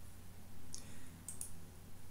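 A few faint computer mouse clicks: the file explorer is being clicked to open a file, over a steady low hum.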